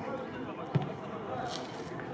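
A football kicked once, a dull thud under a second in, over faint voices of players on the pitch.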